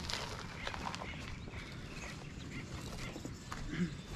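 Scattered crunching of footsteps on roof gravel, with a few short animal calls, the loudest just before the end.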